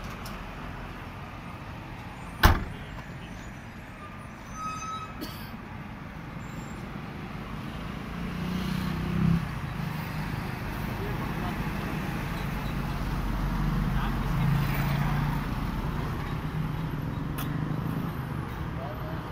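A single loud bang about two and a half seconds in, the Mercedes W123 estate's tailgate being shut. From about the middle on, a low, steady vehicle engine drone grows a little louder.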